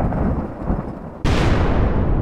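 Deep booming impact hits of a cinematic intro soundtrack. The first boom is fading as the sound begins, then a second sudden boom comes a little over a second in and rings out in a long fading tail.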